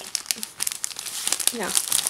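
Clear plastic packaging of a brush set crinkling as it is handled, a dense run of small crackles.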